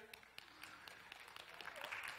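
Faint, scattered clapping from a congregation in a hall, growing slightly louder near the end.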